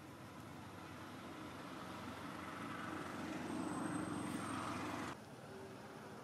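A passing motor vehicle's engine, a steady rumble growing gradually louder, cut off abruptly about five seconds in.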